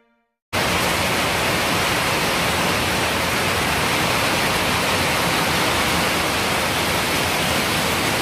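Heavy rain pouring down, a loud steady hiss that cuts in suddenly about half a second in.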